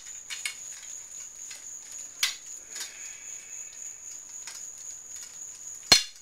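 Steel golf shafts (KBS Tour, stiff flex) ticking and clinking against each other as a bundle is handled and sorted, with a brief metallic ring about three seconds in. A sharp clack just before the end is the loudest sound.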